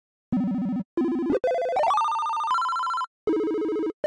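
Synth1 software synthesizer playing its "Telephone" preset: a run of notes, each a fast two-tone warble like a phone ringing. The notes climb in pitch, some sliding up into the next, with short gaps between them.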